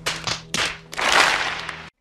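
A group of people clapping and applauding. It starts with a few separate claps, thickens into dense applause about a second in, then cuts off abruptly just before the end.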